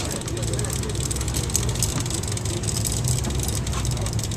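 Steady low drone of the fishing boat's engine running, with voices in the background.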